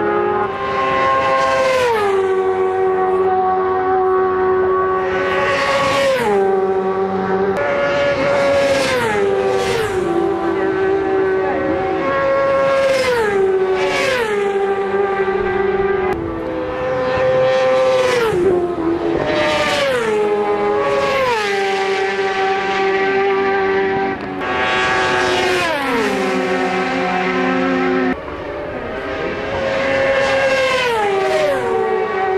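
Racing motorcycles passing flat out one after another, a dozen or so in quick succession. Each engine note drops sharply in pitch as the bike goes by, with a brief loud peak at each pass, and the next bike is already audible as the last one fades.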